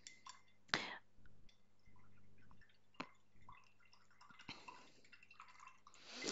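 Faint handling sounds of painting tools off-camera: a few sharp clicks and light taps over a low steady hum.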